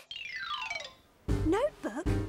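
A cartoon scene-transition sound effect: a falling, sweeping tone lasting just under a second. Music and a voice come in from about a second and a half in.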